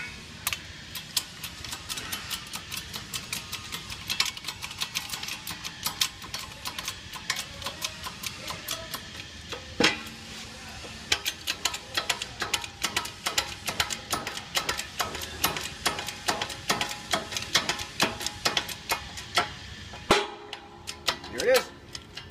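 Tapered roller carrier bearing being pressed onto a Ford 9-inch differential carrier in a shop press: rapid, irregular sharp clicks and creaks, several a second, with one louder crack about halfway through. The clicking dies away shortly before the end as the bearing seats.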